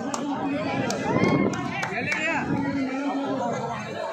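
Several spectators and players chattering and calling out at once, one voice rising in a call about a second in. A few short sharp clicks or claps come in the first two seconds.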